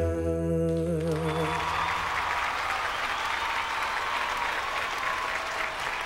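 The last held sung note of the song with its accompaniment dies away over the first second or so. Sustained applause from the audience and judges follows, with a soft held musical chord beneath it.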